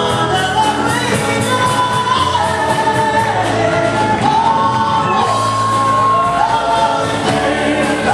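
Live gospel worship song: a singer's melody with long held and gliding notes over piano accompaniment, a steady bass and an even beat.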